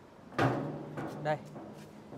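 A sharp knock about half a second in, followed by a man speaking a short word or two.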